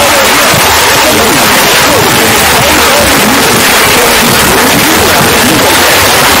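Very loud, heavily distorted noise with many voice-like wails gliding up and down through it, unbroken throughout.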